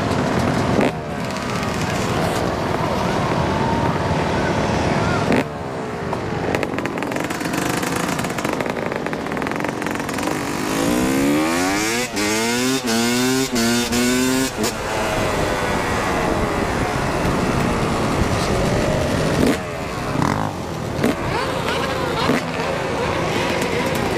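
Dirt bike engines running while riding in a group of other motorbikes and ATVs. Midway through, one or more engines are revved hard, rising and falling in pitch for a few seconds.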